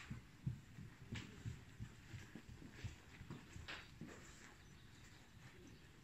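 Faint, muffled hoofbeats of a trotting pony on a soft indoor arena surface: low thuds, several a second.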